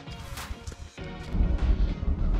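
Background music with steady held tones. There is a brief sharp knock about half a second in, and a heavy low rumble comes in a little past the middle.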